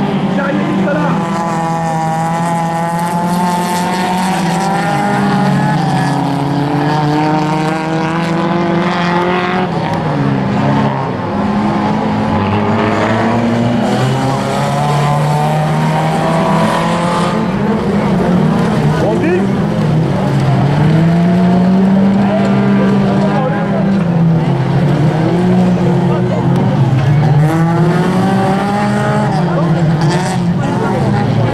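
Several dirt-track racing cars' engines running hard, overlapping, each revving up and dropping in pitch again and again as the cars race around the circuit.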